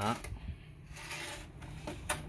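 Hands shifting and turning a Panasonic mini stereo unit's casing, a soft rubbing scrape about a second in.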